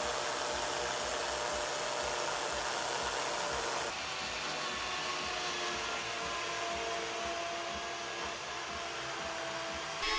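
Makita chainsaw running steadily as it cuts into a block of ice, a continuous whirring, rasping power-tool sound. The sound shifts abruptly about four seconds in.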